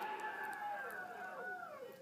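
A white kitten giving drawn-out mews that fall in pitch as it eats.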